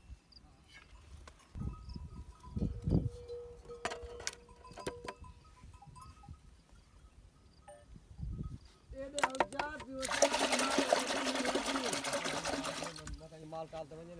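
A hand sloshing and scooping through fresh buttermilk in a large aluminium churning pot, gathering the butter churned out of the lassi. Mostly soft handling sounds at first, then a louder splashing stretch of about three seconds near the end.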